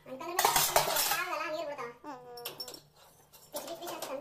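Stainless steel vessels and tumblers clattering and clinking against each other in a plastic tub as they are handled. The clatter is loudest in the first second and a half, with another short burst near the end.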